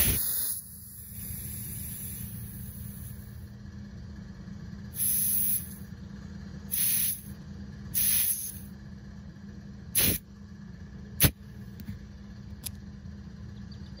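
Compressed air hissing at a tire valve from an air hose chuck, in several short bursts after a longer hiss at the start, over a steady low drone; a sharp click follows near the end.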